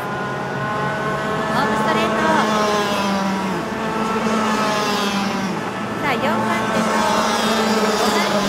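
Several junior racing karts' two-stroke engines running hard as the karts pass, their notes falling and rising against one another as the drivers lift and accelerate.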